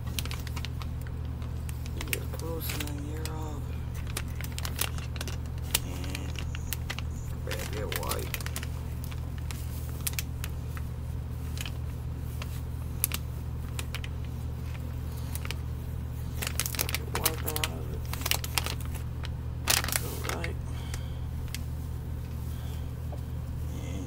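Soft plastic wet-wipes pack crinkling and rustling with scattered sharp clicks as its resealable label is peeled back and a wipe is pulled out. A steady low hum runs underneath.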